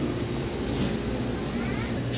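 A steady low mechanical hum under continuous background noise.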